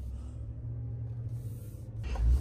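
Low, steady rumble inside the cab of a 2024 Chevrolet Silverado ZR2 Bison as its 6.2-litre V8 pulls the truck away at low speed.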